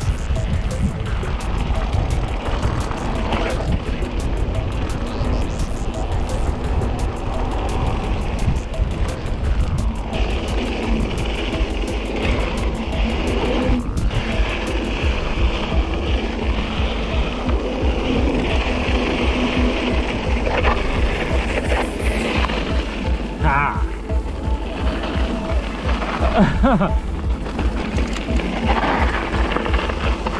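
Mountain bike ridden fast down dirt singletrack: wind rushing over the handlebar camera's microphone, with tyre noise on the dirt and the rattle of the bike over bumps, loud and continuous.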